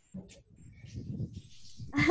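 A child's quiet, muffled giggling and breathing, heard through a video call's audio, growing a little louder over the two seconds.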